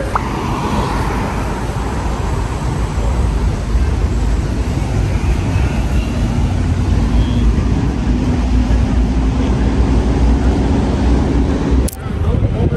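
Road traffic on a busy multi-lane city road: a steady rumble of car and bus engines and tyres, with a low engine drone slowly rising in pitch in the second half.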